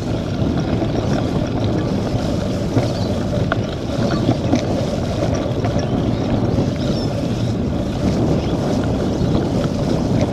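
Steady wind noise on the action camera's microphone and the hiss of cyclocross tyres rolling through wet mud, with a few small clicks.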